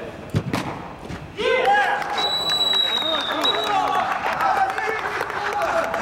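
A football struck hard, one sharp thud about half a second in, then men shouting and a referee's whistle blown once for about a second and a half, signalling a goal.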